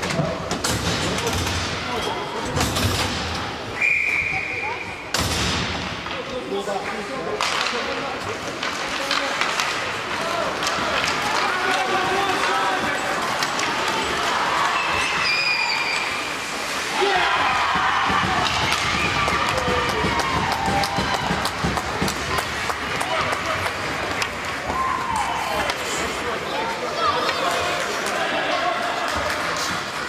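Indoor ice hockey game: spectators talking and calling out, with frequent sharp clacks and knocks of sticks, puck and boards. A referee's whistle is blown once, a steady shrill note lasting about a second, some four seconds in.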